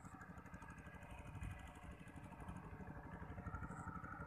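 A faint small engine running steadily with a rapid, even putter.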